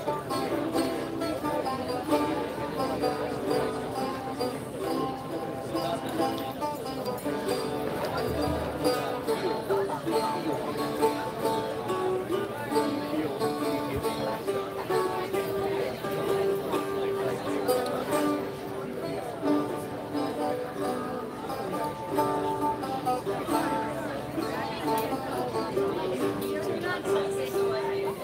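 Live dance music with a plucked string instrument playing a melody, over crowd chatter.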